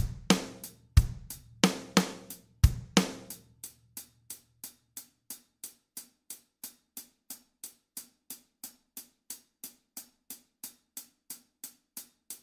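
Drum kit playing a simple classroom rhythm: bass drum on 1 and the 'and' of 3, snare on 2, 2-and and 4, over steady eighth-note hi-hat. About three seconds in, the bass and snare drop out and only the hi-hat keeps time, about three light ticks a second, for the rhythm to be played without accompaniment.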